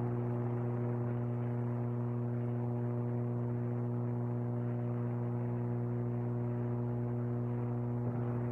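Steady low electrical hum with a row of even overtones, unchanging throughout, on the broadcast commentary audio feed.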